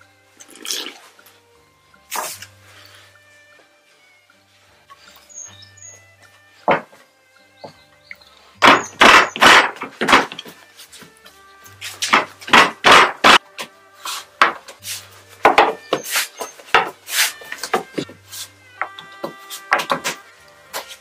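Wooden rolling pin rolling out dough on a wooden board: short, loud rubbing strokes, a few at first, then in quick runs through the second half. Soft instrumental music with a repeating low bass note plays underneath.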